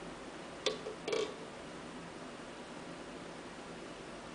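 Handling noise from two wooden Kamaka ukuleles being shifted in the hands: a sharp click about two-thirds of a second in, then a short knock about half a second later, over a steady low hiss.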